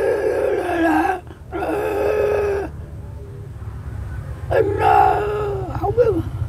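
A very old man's voice in three long, drawn-out, strained utterances that are hard to make out. A low rumble grows underneath in the second half.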